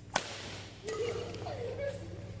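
A small-frame badminton training racquet striking a shuttlecock: one sharp, loud crack near the start. It is followed by about a second of wavering pitched sound.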